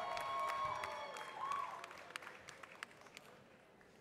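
Audience applause with cheering voices held through the first second. The clapping then thins to a few scattered claps and fades away.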